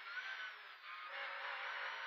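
Škoda 130 LR rally car's engine heard from inside the cabin in second gear, thin-sounding with no bass: its note dips briefly just before the middle, then holds a steady pitch as the car pulls on.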